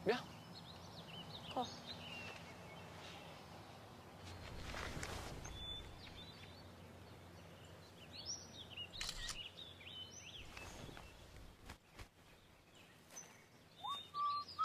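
Quiet outdoor woodland ambience with scattered bird chirps and short calls, and a soft swell of noise about four to six seconds in.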